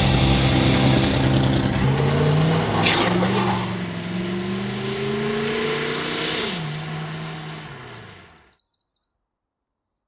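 Vintage car engine pulling away. Its note climbs steadily for a few seconds, drops sharply at a gear change about six and a half seconds in, then fades out as the car drives off.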